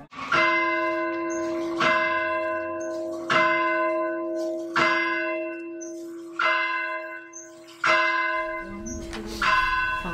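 A church bell tolling, seven strikes about a second and a half apart, each ringing on and fading before the next.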